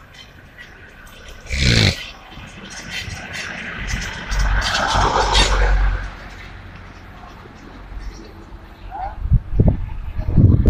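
Street ambience with a car approaching and passing close by, loudest from about four to six seconds in. A brief loud call is heard a little under two seconds in, and voices come in near the end.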